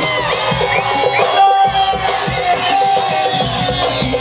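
Amplified live Garhwali folk-pop music with a held melody line over the band, and a large crowd cheering and whooping along.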